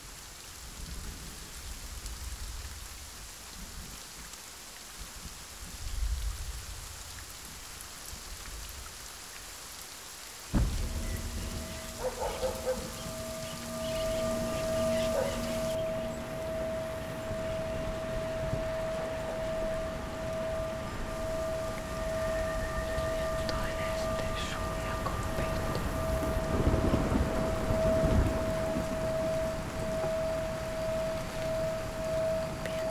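Steady rain-like hiss with low rumbles of thunder. About ten seconds in, a sudden hit brings in a steady high tone that holds to the end, with heavier low rumbling near the end.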